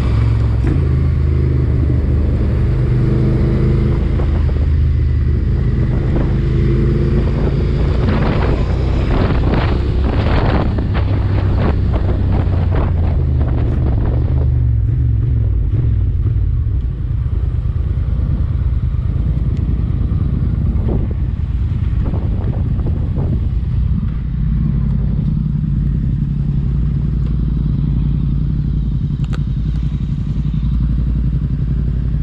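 Motorcycle engine running steadily while riding, with a stretch of noisy buffeting on the microphone about a third of the way in; the engine note changes around the middle and settles again later.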